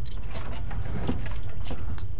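Water sloshing in a basin as computer circuit boards are swished through it to wash them, over a steady low rumble.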